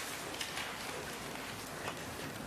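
Steady hiss of meeting-room background noise with a few light clicks and rustles scattered through it.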